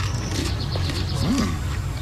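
A man eating a biscuit: mouth sounds, with one short rising-and-falling hum of appreciation about one and a half seconds in, over a low steady hum.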